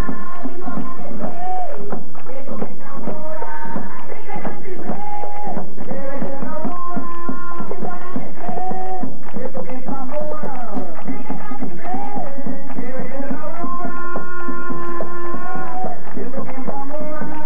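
Live tambora music: a rope-tensioned, double-headed tambora drum beats a steady rhythm under a singing voice whose held notes bend up and down.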